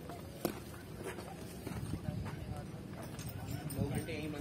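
A bull pawing and scraping at loose sand with its hooves, with scattered sharp knocks. People are talking in the background.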